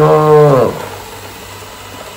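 A person's long, drawn-out low voiced sound, held on one pitch and falling off about two-thirds of a second in. After it, only the faint steady running of an AGARO Alpha robot vacuum on the tile floor remains.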